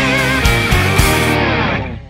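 Background music: an electric-guitar-led song with a steady beat, fading out near the end.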